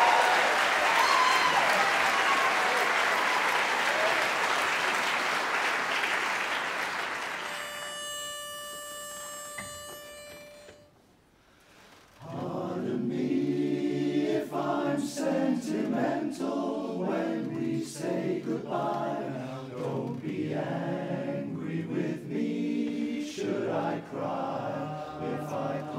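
Audience applause fading away, then a single steady note held for a few seconds and a moment of near silence. About halfway through, a male barbershop chorus starts singing a cappella in close harmony.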